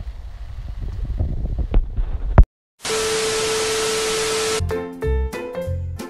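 Low rumbling noise with small ticks, cut off by a sharp click and a brief total silence; then an even hiss with one steady held tone for about two seconds, like an edited-in transition effect. Upbeat background music with piano-like notes starts near the end.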